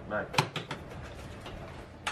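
Kitchen handling clatter: one sharp knock about half a second in, followed by a few lighter clicks, as seasoning containers and the bowl are handled.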